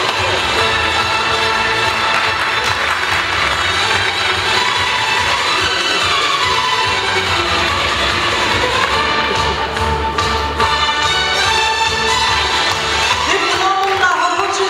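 Audience applauding in a hall, with music playing underneath. The music's melody comes through more plainly in the second half.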